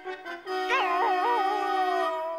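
A cartoon dog's howl that wavers up and down a few times, then draws out into one long, slowly falling note, over background music with a held note.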